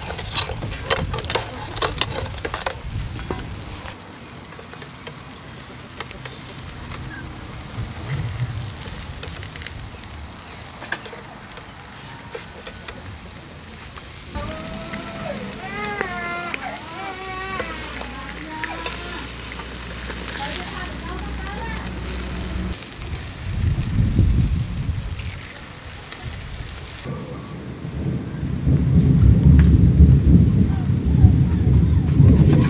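Dried fish grilling on a wire rack over glowing charcoal, sizzling with sharp crackles and pops, busiest in the first few seconds. Deep rumbles come in briefly past the middle and again near the end.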